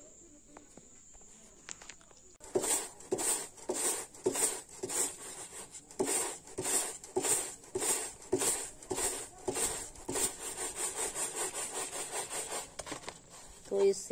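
Dried jakhya (Cleome viscosa) plants being rubbed and scraped by hand against a flat board to free their sticky seeds: rhythmic dry scraping strokes, about two a second, starting a couple of seconds in and stopping shortly before the end. A steady high insect trill runs underneath.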